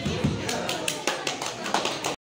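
Scattered hand clapping from a small audience, several claps a second, with voices underneath.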